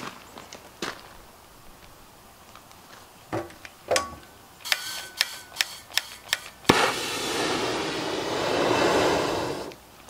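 Clicks and knocks of the oxy-acetylene torch being handled, then a sharp pop as the torch lights, followed by the flame burning with a steady loud hiss for about three seconds.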